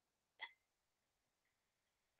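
Near silence on an online call's audio, with one very short, faint blip about half a second in.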